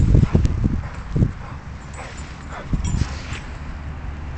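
An American bulldog making short sounds close by, over a run of low, irregular thumps in the first second and a half; quieter afterwards.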